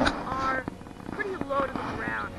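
A man's voice speaking in short snatches, with a few faint knocks.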